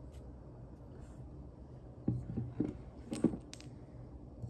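A few short knocks and clinks of candles being handled and set against a hard tabletop, starting about halfway in, with the sharpest one a little after three seconds.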